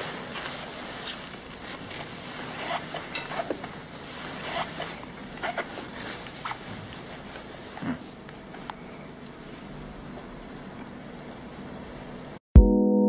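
Quiet ward ambience from a film soundtrack: a steady hiss with scattered faint knocks and brief squeaky sounds every second or so.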